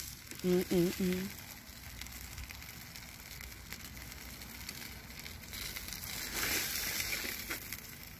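Aluminium foil crinkling and rustling on a grill as tongs lift grilled chicken pieces off it, louder for a second or so near the end.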